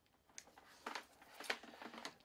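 A few light clicks and taps from a rotary tool being handled and moved, with the motor off. The loudest tap comes about a second and a half in.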